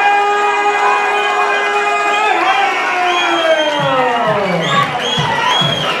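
A ring announcer's amplified voice drawing out a fighter's name in one long call, held on one pitch for about two seconds and then falling away. A crowd cheers and whoops under it and after it.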